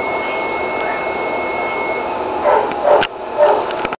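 A steady high electronic tone, typical of a therapy laser while it is emitting, stops about halfway through. Three brief vocal sounds from the small dog on the table follow near the end.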